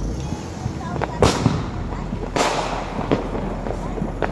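Fireworks going off: two sharp bangs about a second apart, each trailing an echo, then a few smaller pops.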